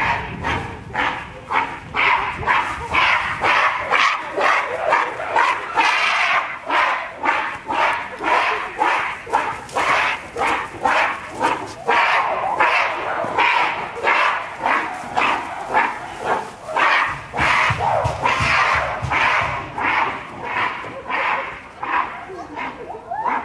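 Adult female western lowland gorilla screaming in a long run of harsh, rapid calls, about two or three a second: the angry screaming of a female chasing the silverback.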